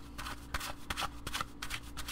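Tarot deck being shuffled by hand: a quick, irregular run of soft papery clicks as the cards are passed through the hands.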